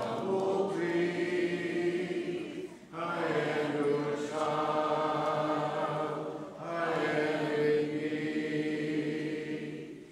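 Congregation singing a hymn a cappella in parts, on long held notes. The singing breaks briefly for breath about three seconds in and again about six and a half seconds in.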